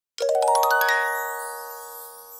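A quick upward run of bright bell-like chime notes, a dozen or so, that ring on together and slowly fade away.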